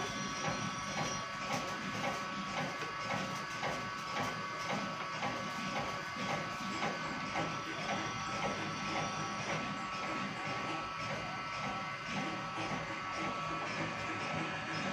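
Small electric screw oil press running while pressing cumin seeds: a steady motor whine under a fast, even run of clicks as the screw crushes the seed and pushes out the cake.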